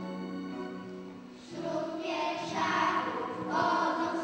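Music: a held keyboard chord, then a group of voices singing together comes in about a second and a half in and grows louder.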